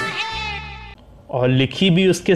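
A Bollywood song ends about a second in on a held sung note. After a short dip, a voice starts with short syllables that bend in pitch.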